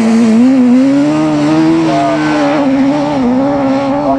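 Autograss racing specials' engines running hard at high revs, the pitch wavering up and down as the drivers lift and accelerate. A second, lower engine note joins about a second in.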